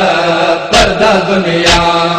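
Male voices chanting a noha, a Shia lament, with a sharp thump marking the beat about once a second, twice here.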